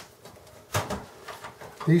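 Gray ribbon cables and their plastic connectors being handled inside a desktop computer case: one sharp click a little under a second in, then a few faint ticks.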